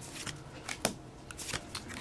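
Trading cards being handled: a card slid off the front of a held deck and moved behind it, with a soft rustle of card stock and a few light flicks, the sharpest a little under a second in.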